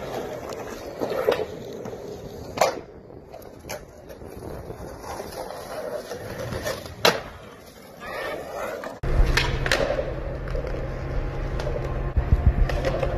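Skateboard on concrete: wheels rolling, with a handful of sharp clacks of the board's tail and deck hitting the ground. About 9 s in, the rolling turns suddenly louder and deeper.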